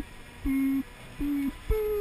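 Chairlift loading-station signal beeping: short, low electronic beeps about three-quarters of a second apart, then a higher, longer beep near the end. This is the countdown cue for waiting riders to move through the gates onto the loading conveyor.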